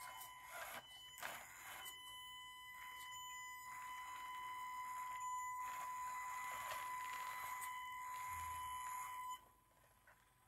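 Small electric RC crawler's motor and drive electronics giving a steady, faint high whine as the truck crawls slowly up a steep 45-degree slope, with a few light knocks in the first couple of seconds; the whine cuts off suddenly about nine seconds in.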